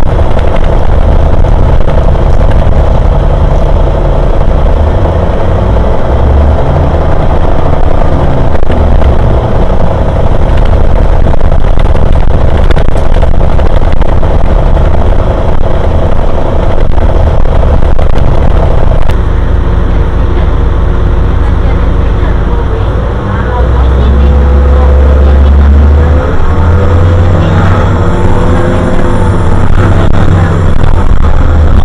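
City bus running, heard from inside the cabin: a loud low rumble with a steady hum, then from about two-thirds of the way in a drivetrain note that rises and falls as the bus speeds up and slows down.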